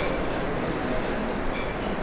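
Steady background noise of a hall with a public-address microphone, an even hiss and rumble with no clear words.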